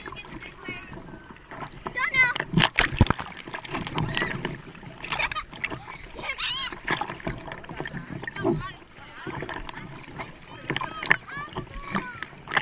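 Sea water splashing and sloshing against a bodyboard and a waterproof camera riding at the water line, with the sharpest splashes about three seconds in. A child's high voice calls out several times over the water noise.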